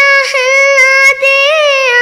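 A child singing, holding one long high note, with a brief break about a second in and a small rise and fall in pitch shortly after.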